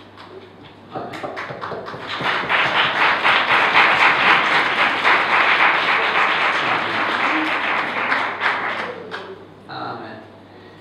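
Congregation applauding: many hands clapping, starting about a second in, swelling and then fading out near the end.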